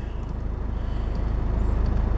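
Ford Fiesta 1.4 four-cylinder diesel engine idling steadily, heard from inside the cabin: a low rumble with a fast, even pulse.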